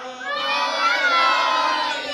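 Many voices of men and boys singing a devotional chant together in unison, the pitch bending and holding on a drawn-out line.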